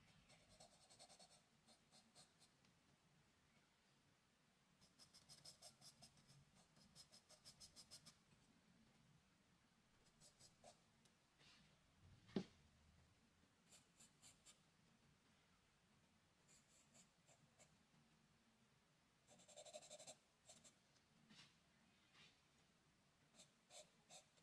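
Charcoal pencil scratching faintly on drawing paper in short bursts of quick hatching strokes, a second or so each, separated by pauses. One sharp tick about twelve seconds in is the loudest sound.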